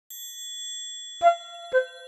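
Intro jingle of bell-like chimes: a high shimmering chime that slowly fades, then two struck, ringing notes about half a second apart, the start of a tinkling tune.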